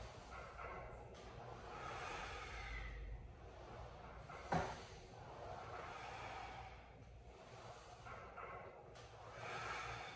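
A man breathing audibly in and out while exercising, the breaths swelling and fading every few seconds. One sharp click comes about halfway through.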